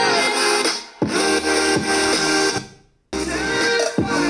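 Pop music with guitar playing through an LG PH2 portable Bluetooth speaker. It dips briefly about a second in, cuts out almost to silence just before the three-second mark, then comes back with much heavier bass as bass boost is switched on.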